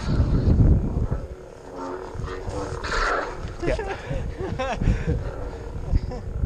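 Close-range combat lightsaber sparring: heavy low rumble and buffeting on the head-mounted camera's microphone from the fighter's movement, with a few sharp knocks and short gliding, voice-like sounds in the second half.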